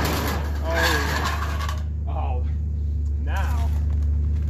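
Metal roll-up storage unit door rattling as it is pushed up open, for about the first two seconds, followed by a couple of short vocal sounds. A steady low hum runs underneath.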